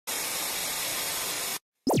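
TV static hiss sound effect, even and steady for about a second and a half, then cut off suddenly. Near the end comes a brief sweeping electronic zap, the sound effect of an old CRT television switching off.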